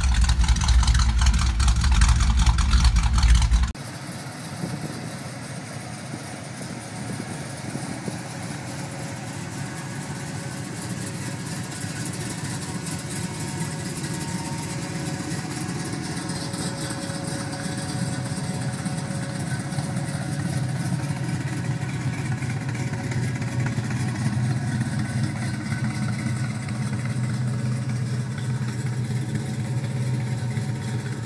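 A Chevrolet 409 big-block V8 running loud and deep, cut off sharply a few seconds in. It is followed by a Dodge Charger's 440 big-block Mopar V8 idling steadily and growing gradually louder.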